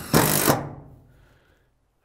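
Cordless impact driver running in a short burst, driving a screw into a corrugated steel roof panel, the sound trailing off over about a second.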